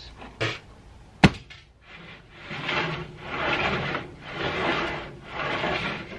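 A single sharp wooden knock about a second in, then four rough rubbing swells of weathered wooden boards being slid back and forth across each other and the saw table.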